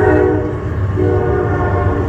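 A loud, steady pitched drone over a constant low rumble, mechanical in kind. It dips briefly about half a second in, then comes back.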